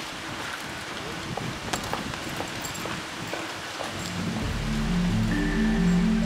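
Steady outdoor background hiss with a few faint ticks, then soundtrack music comes in about four seconds in, with slow, held low notes that grow louder.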